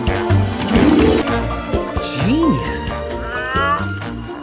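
Upbeat film score playing, with animal-like cries over it: one rising and falling cry about two seconds in, and a run of quick rising squeals near the end.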